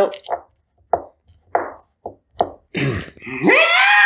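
A man's voice making a few short sounds, then sliding up near the end into a loud, held high note in an 80s hair-metal style, which the singer himself judges flat.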